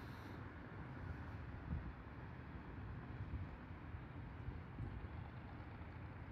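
Steady hum of distant road traffic with a low rumble that swells and fades.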